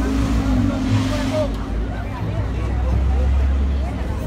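Engine of a double-decker bus running close by, a droning hum that dips in pitch early on and a low rumble that swells in the second half, under the chatter of a crowd of voices.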